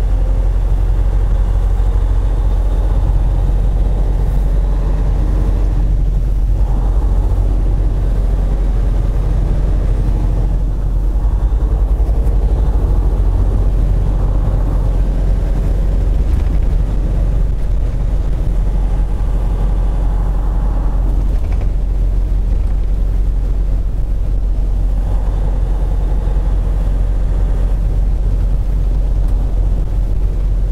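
A semi truck's diesel engine and road noise heard from inside the cab while driving: a steady low drone.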